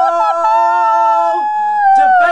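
Voices singing a mouth-made fanfare: a long held note that breaks off about 1.4 s in, with a second, higher held note joining about half a second in and carrying on alone.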